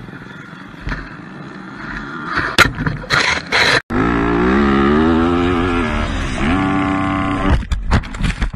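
Motocross dirt bike engine heard from a helmet camera: after a short gap about four seconds in, it comes in loud, its pitch climbing and falling as the throttle is worked, then holding a higher steady note. It cuts off suddenly near the end in a jumble of knocks as the bike crashes. Before the gap there is rough noise with a few knocks.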